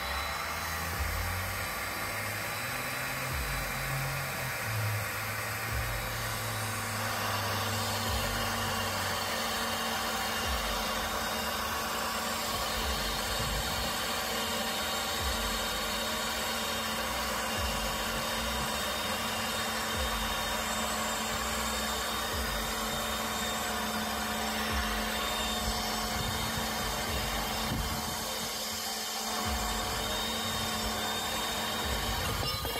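A REX electric pipe threading machine running steadily, its motor turning a black steel pipe while the die head cuts threads into it.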